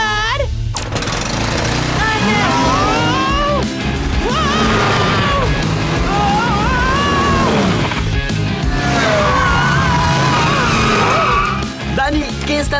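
Cartoon soundtrack: background music with sliding, wavering vocal cries in three stretches, over a steady hiss and low rumble.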